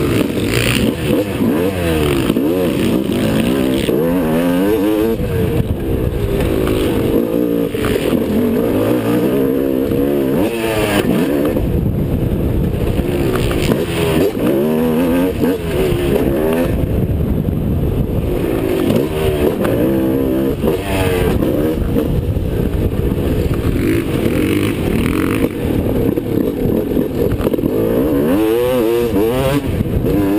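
Motocross dirt bike engine at race pace, its pitch rising and falling again and again as the rider works the throttle and shifts through the corners and straights, heard loud and close from a helmet-mounted camera.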